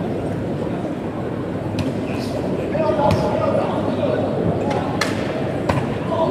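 Arena crowd noise during a boxing bout, people talking and shouting throughout. A few sharp smacks of gloved punches landing cut through, about two seconds in, around three seconds and twice near the end.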